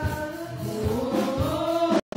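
Live gospel music: singing over a drum kit, the bass drum thudding about twice a second.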